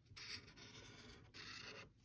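Black marker tip scratching across paper in two faint strokes, the first a little over a second long, the second shorter.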